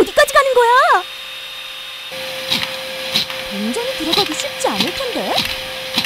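A 600 W multi vacuum cleaner's motor running with a steady whine. Its sound changes abruptly about two seconds in. Excited voices exclaim over it.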